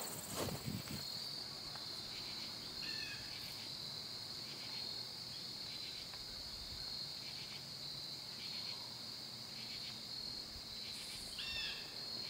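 Steady high-pitched chorus of crickets and other insects in autumn woods, with a faint regular pulsing. Two brief faint chirps sound about three seconds in and near the end.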